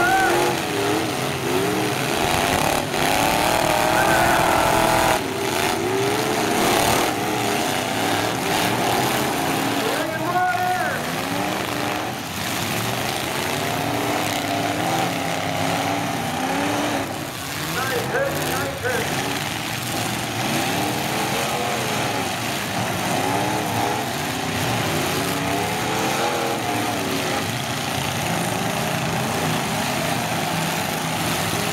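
Several demolition derby cars' engines revving hard again and again, their pitch rising and falling, with a few sudden crashes of car bodies hitting, over the noise of a large grandstand crowd.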